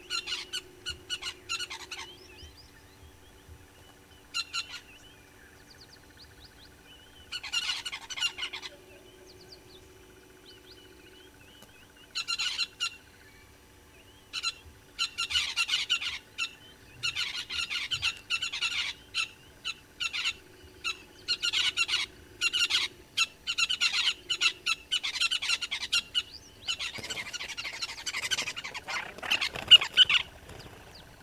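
Birds calling in short bursts of rapid, chattering notes, sparse at first and then coming almost without pause in the second half, ending with a longer dense burst.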